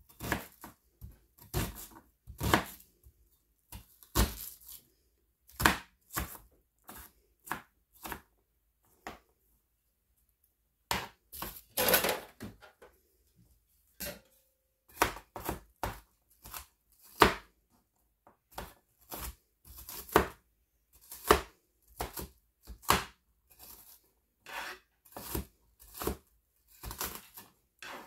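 Kitchen knife chopping an onion on a plastic cutting board: irregular sharp strikes, often one to two a second, with a few short pauses.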